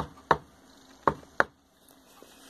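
Four sharp taps in two quick pairs on a Honda XL500's rocker box, knocking it down onto the cylinder head so it seats on its fresh silicone sealant.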